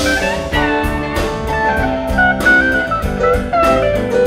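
Live rock band playing an instrumental passage: drum kit, electric bass, keyboards and guitars, with a lead melody line that bends in pitch over a steady beat.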